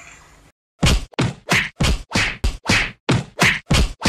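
Rapid string of dubbed punch sound effects, about a dozen short whoosh-and-smack hits at roughly four a second, starting about a second in after the sound cuts out briefly.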